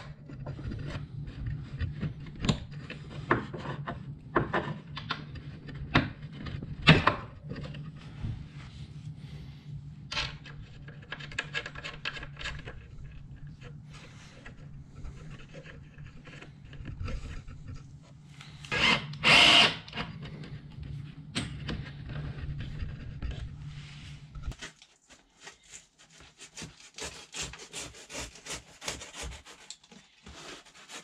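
Wooden battens and small hardware handled against a wooden frame: scattered knocks and clicks of wood on wood, with a brief loud scrape about two-thirds of the way in, all over a steady low hum. The hum stops near the end, leaving only faint tapping and rustling.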